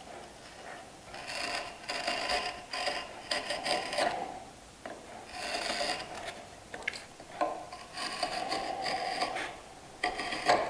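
A marking knife scoring a line into a wooden board, drawn along another board's edge in repeated scratchy strokes that come in several bursts with short pauses between them.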